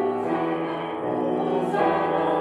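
Mixed church choir singing in parts, holding sustained chords that change a couple of times.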